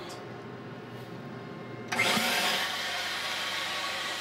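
Motion-picture film printing machine running: a steady machine hum, then about halfway through a louder, steady whirring hiss sets in and holds.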